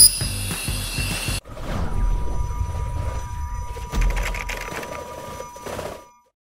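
Handheld fiber laser cleaner ablating rust, a high crackling hiss over background music, cut off abruptly about a second and a half in. After that, outro music with steady held tones plays on and fades out near the end.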